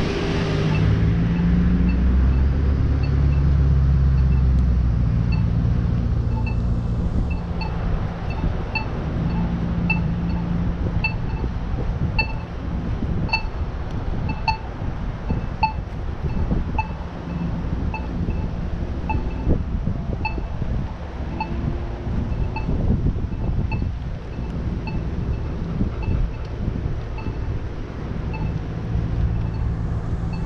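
Traffic running on a wide road, with a heavy vehicle rumbling by in the first few seconds and wind on the microphone. Over it a pedestrian crossing signal's locator tone ticks about one and a half times a second, growing fainter near the end.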